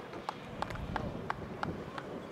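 A regular series of short, sharp clicks, about three a second, over low outdoor background noise.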